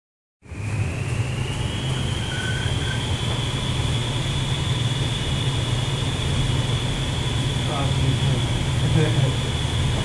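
Vertical wind tunnel running: a loud, steady rush of air with a deep hum and a high whine that rises slightly over the first second or two, then holds.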